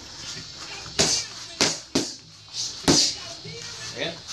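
Boxing-gloved punches landing on focus mitts: four sharp smacks in a short combination, two close together about a second in and a last one near the three-second mark.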